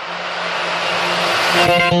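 Progressive house build-up: a white-noise riser sweeps upward and grows louder, then about one and a half seconds in the drop arrives with synth chords over a low bass.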